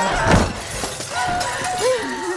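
A loud crash about a third of a second in, amid high, wavering screams and crying during a violent struggle.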